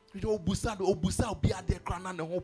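A man preaching fast and forcefully into a handheld microphone, in quick, closely spaced syllables.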